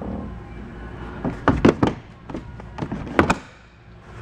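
A series of sharp knocks and thunks from the personal watercraft's hull and engine-compartment cover being handled. The loudest come in a quick group about one and a half seconds in and again just after three seconds.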